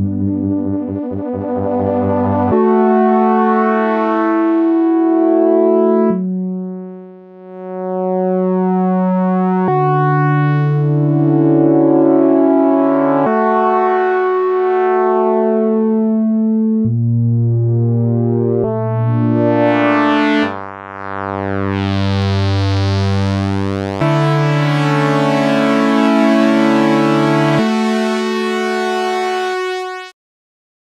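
GForce OB-E software synthesizer, an Oberheim 8-Voice emulation, playing a series of sustained chords on pulse-width-modulated oscillators. The chords change every two to four seconds, with short dips in level between some of them.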